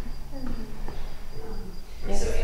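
A cricket trilling steadily at a high pitch, under a low murmur of voices.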